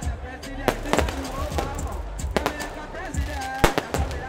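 Fireworks going off in several sharp, irregular bangs, the loudest near the end, over amplified music and voices.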